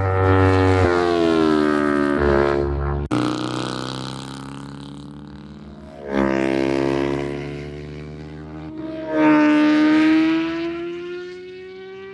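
Racing motorcycle engines at high revs, the pitch gliding up and down as the bikes accelerate and pass. The sound changes abruptly about 3, 6 and 9 seconds in, and is loudest near the start and about 9 seconds in.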